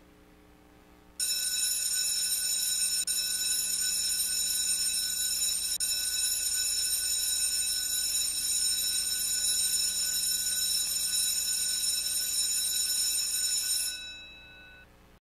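School bell ringing continuously for about thirteen seconds. It starts a little over a second in and stops near the end, leaving a brief fading ring.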